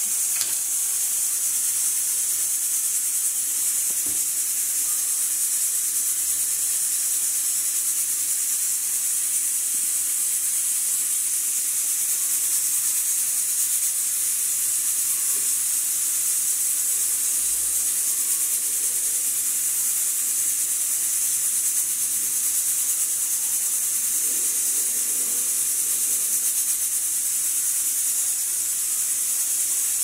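Steady high-pitched hiss, with faint rustles of handling near the end.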